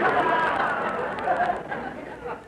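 Studio audience laughing, heard on a 1940s radio broadcast recording; the laughter dies away near the end.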